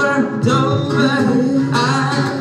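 A male voice singing live over a strummed acoustic guitar.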